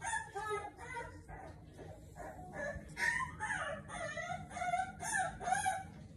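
Four-week-old American bully puppy crying in a quick run of short, high, wavering squeals and whines, growing louder from about halfway through.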